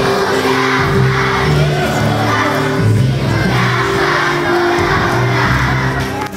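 A large group of children singing together over instrumental accompaniment, with sustained low notes moving from one pitch to the next.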